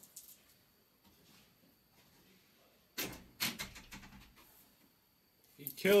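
A short run of sharp knocks and clatter about three seconds in, then quiet until a man begins speaking at the very end.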